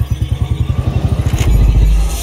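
Motorcycle engine running with a rapid, even pulsing beat, about fourteen pulses a second. A deep low rumble swells over it near the end.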